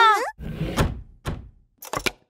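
Cartoon sound effects: a dull thunk about half a second in, a lighter knock, then a quick double click near the end.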